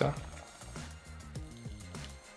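Soft background music: a low melody of changing notes.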